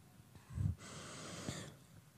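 A young Quran reciter's deep breath drawn in close to a handheld microphone, about a second long, opening with a low pop of air on the mic: the breath taken before the next recited phrase.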